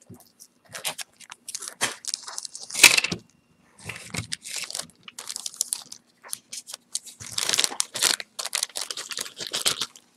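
Clear plastic zip-top bag crinkling and rustling in irregular bursts as hands rummage through it to pull out jewelry, loudest about three seconds in.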